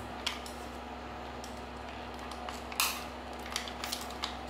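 Light plastic clicks and knocks from handling an analog clamp meter and its test leads: a few scattered taps, the loudest about three seconds in, over a steady low hum.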